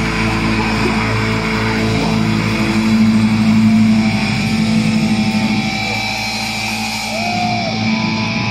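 Live thrash metal band playing through a festival PA, heard from inside the crowd: distorted electric guitars ringing out held chords over drums. It is loudest around three to four seconds in.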